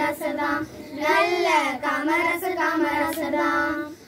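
A small group of young girls singing a Tamil song together in unison, unaccompanied, with a brief breath pause just before a second in and another at the end.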